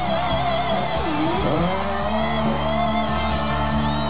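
Live rock band playing, led by an electric guitar whose held note drops sharply in pitch and swings back up about a second in, over bass and drums.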